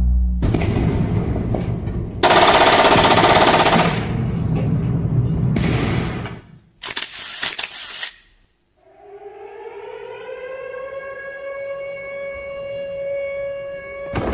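A sound-effect collage of war: loud rushing noise and a short rattle of cracks like gunfire, then after a moment's silence a siren-like tone that rises and holds steady.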